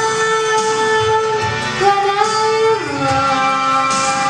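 A young female singer holding long notes into a microphone over an instrumental backing track played through a PA speaker; the melody slides up about two seconds in and steps down to a lower note near the end.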